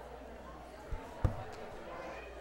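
Two dull thumps about a third of a second apart, the second much louder, over a low murmur of people talking.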